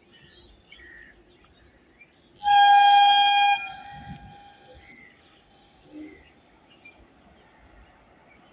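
Locomotive horn of an approaching express train: one steady single-pitched blast of about a second, about two and a half seconds in, trailing off into a fainter tail. The rest is faint trackside background.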